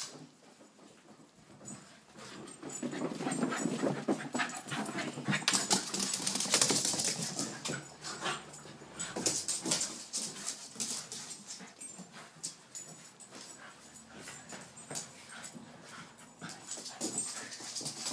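A Cavachon and a Yorkshire terrier playing together, with scuffling and quick clicks of paws on a laminate floor. It is busiest and loudest in the first half and settles lower after about ten seconds.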